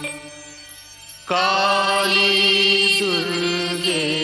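Devotional film song with chant-like singing: long held vocal notes over accompaniment. The singing drops back briefly in the first second, then a loud held phrase comes in.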